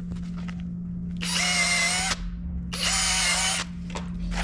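Power drill boring into a hardwood deck board in two bursts of about a second each, its motor whining steadily under load during each.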